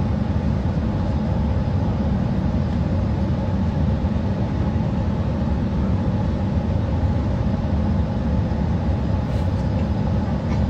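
Airliner cabin noise: a steady low rumble with a faint hum over it, heard through a phone's microphone.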